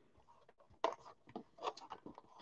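Faint handling of a cardboard trading-card blaster box as it is picked up: a few soft taps and scrapes, beginning just under a second in.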